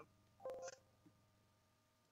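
Near silence: room tone, broken about half a second in by a single brief steady-pitched sound, a man's short 'hm', with a faint click at its start.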